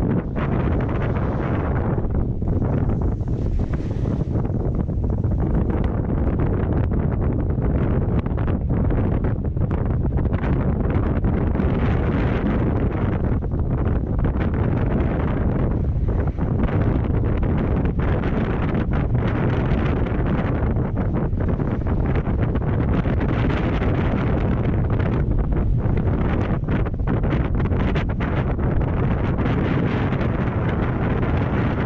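Steady wind buffeting on the microphone of a camera moving downhill at skiing speed, a loud, rushing roar with no break.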